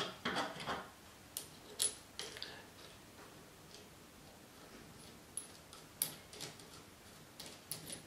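Light metallic clicks and clinks as the cast hand wheel of a tap grinding attachment is slid back onto its shaft and its retaining nut is started by hand. A handful of short, irregularly spaced clicks with quiet between them.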